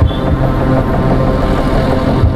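Motor scooter riding in traffic as it slows toward a stop, its engine hum under a steady rush of road and wind noise.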